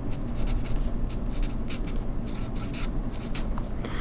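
Sharpie felt-tip marker writing on paper: a quick, irregular run of short scratchy pen strokes.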